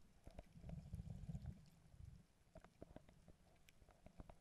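Faint underwater ambience picked up by a camera below the surface: a muffled low rumble that swells about half a second in and eases off after two seconds, with scattered soft clicks throughout.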